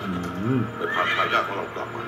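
A horse whinnying in a drama trailer's soundtrack, with a quavering call about a second in. A man's voice calls a name, and music plays under it.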